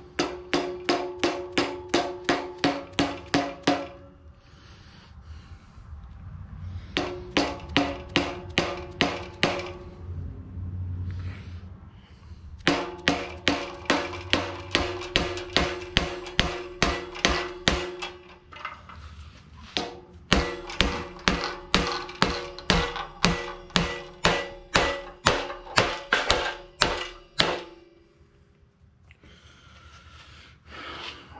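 A mallet driving a metal wedge into the top of an axe handle to lock the axe head on. Quick runs of blows, about four or five a second, each with a short ringing metallic note, come in four bursts with short pauses between.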